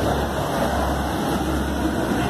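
Steady city street noise: a continuous low rumble of idling vehicle engines under an even wash of traffic and crowd noise.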